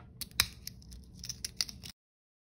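Irregular small plastic clicks and crinkles from fingernails handling and opening miniature plastic toy pieces, the sharpest click about half a second in.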